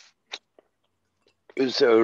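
Small mouth sounds, a short breathy hiss and a faint click, from a man with his fingers at his lips, then silence on the gated call audio until he starts speaking near the end.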